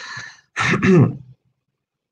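A man clearing his throat in two short bursts about half a second in.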